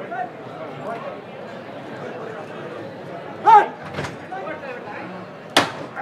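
Crowd murmuring, with a man's raised voice about three and a half seconds in and a single sharp knock near the end.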